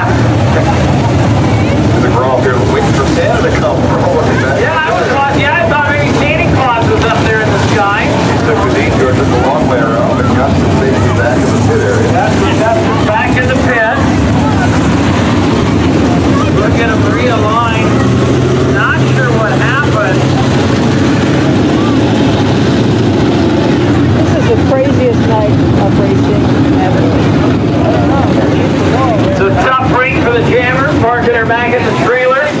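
A field of dirt-track modified race cars running laps together on a dirt oval, a steady mass of engine noise whose pitch rises and falls as the cars pass through the turns.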